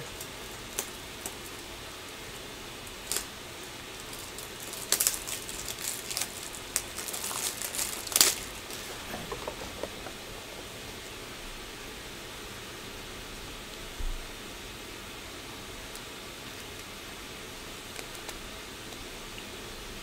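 Plastic trading-card top loaders and sleeves being handled: scattered sharp clicks and crinkles for several seconds, later a single low thump, over a steady background hiss.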